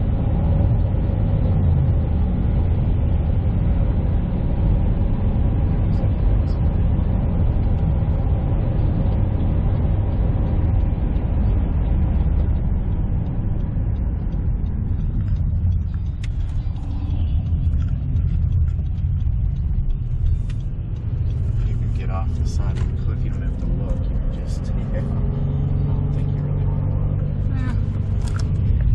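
Steady low rumble of a car on the move, heard from inside the cabin. Scattered clicks and knocks come in during the second half.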